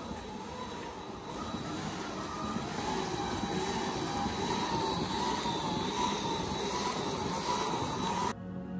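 Cordless power drill running steadily, spinning a barrel made of two plastic water jugs with confetti inside; the motor's whine wavers slightly in pitch and grows a little louder after the first couple of seconds.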